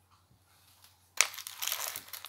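Hands handling things close to the microphone: crackling, rustling noise that starts suddenly about a second in, after a moment of near silence.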